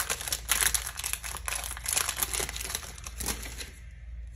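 Foil wrapper of a Pokémon card booster pack crinkling in the hands as the pack is opened and its cards are pulled out, a quick irregular crackle that thins out near the end.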